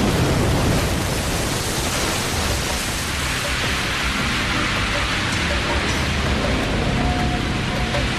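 Animated sound effect of a magical energy blast: a loud, steady rushing noise that starts suddenly.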